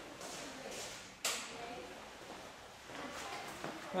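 A single sharp click of a wall light switch being flicked on, about a second in, over quiet room noise.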